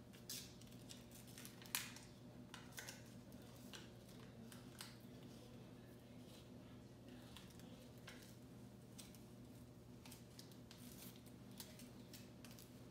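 Faint, scattered crackling and ticking of iron-on transfer paper backing being peeled off freshly heat-pressed fabric, with one sharper snap about two seconds in, over a low steady hum.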